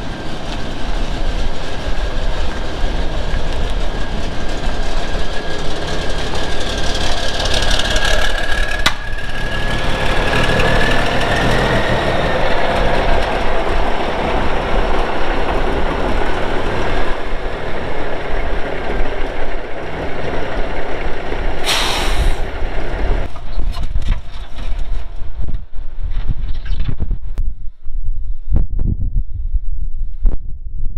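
Diesel engine of a 1983 Peterbilt 359 semi truck running as the truck is driven out and rolls up, with a steady whine that rises slightly near the middle. A brief burst of hissing comes about two-thirds of the way through.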